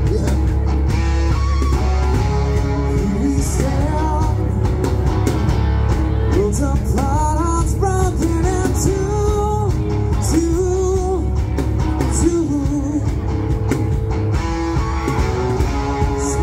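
Live rock band playing a song: electric guitars over bass and drums in a steady beat, with a bending lead melody line above.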